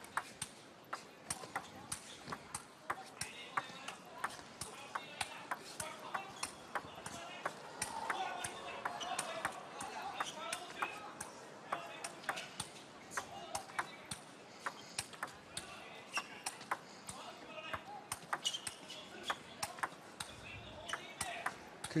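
A long table tennis rally: the ball clicks sharply off the paddles and the table in a quick back-and-forth, a couple of clicks a second throughout.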